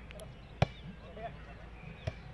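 A volleyball struck once by a player's hands: a single sharp hit a little over half a second in.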